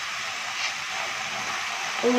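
A steady, even sizzling hiss from chopped vegetables cooking in a kadai on the stove.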